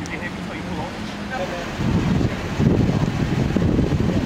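Uneven low rumble of wind and handling noise on a handheld camera's microphone as it is moved, growing louder about two seconds in, over faint voices.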